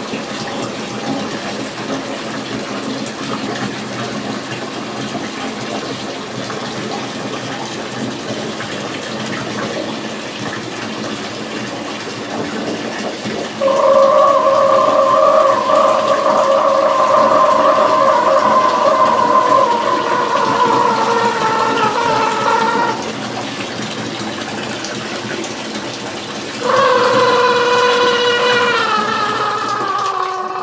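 Water running steadily into a bathtub. About fourteen seconds in, a long pitched tone holds for about nine seconds, sagging slightly in pitch. A second one starts near the end and falls away.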